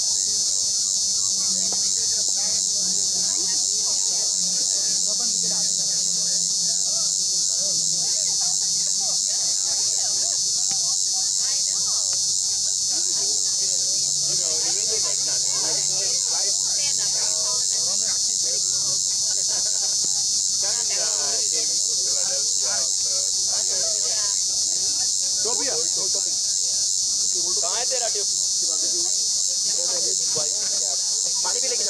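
A steady, high-pitched chorus of insects that runs without a break.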